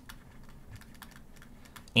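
Faint, irregular clicks and taps of a stylus on a tablet screen while handwriting words.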